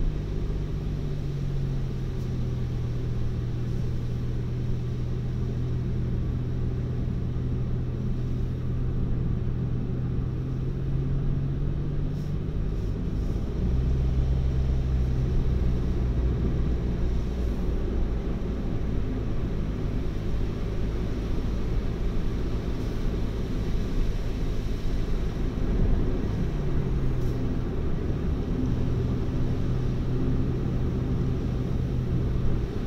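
Car engine and tyre noise heard from inside the cabin while driving: a steady low drone. Its pitch drops about halfway through, when a deeper rumble sets in and the sound grows a little louder. The pitch rises and settles again near the end.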